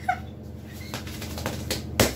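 Scattered sharp taps and flapping rustles from someone moving excitedly, handling a box and waving her arms, with a brief high vocal squeal just at the start.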